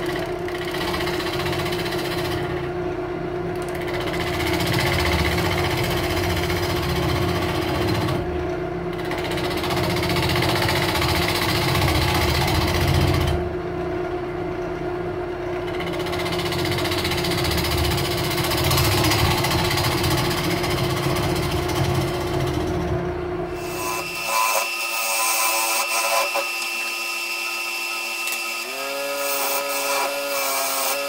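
A wood lathe runs with a steady motor hum while a bowl gouge cuts across the face of a spinning spalted-log blank, flattening it. The rough cutting noise comes and goes as the tool moves. About 24 seconds in, the hum and the deep part of the sound drop away, leaving thinner, higher ringing tones.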